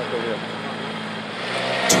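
Steady engine and road noise of a race motorcycle carrying the TV camera. A thin steady tone joins near the end.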